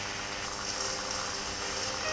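Steady hiss of falling rain, with a faint steady hum underneath.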